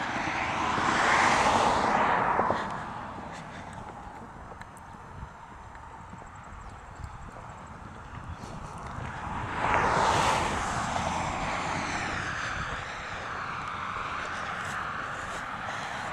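Two vehicles passing on the road, each a swell of tyre and engine noise that rises and fades. The first goes by at the start, the second about ten seconds in.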